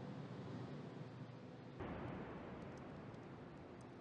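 Faint steady hiss that jumps up suddenly a little under two seconds in and then slowly fades.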